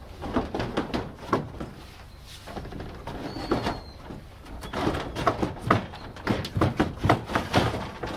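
Worn wooden sliding storm shutters knocking and rattling as they are worked loose and shifted in their track, in irregular clusters of knocks that come thickest in the first second and again over the last three seconds.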